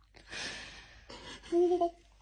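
A person's breathy gasp, then near the end a short held vocal note, the loudest sound here.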